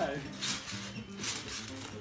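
Garden hose spraying water, a faint steady hiss, with quiet background music underneath.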